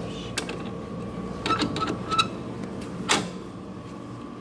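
Vending machine taking coins: a few small metallic clinks as coins drop into the coin slot, then one louder knock about three seconds in as a bottle drops into the delivery bin, over the machine's faint steady hum.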